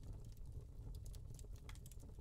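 Quiet room tone: a low steady hum with scattered faint clicks.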